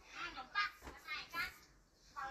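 A young child's high-pitched voice in a few short utterances, quieter near the end.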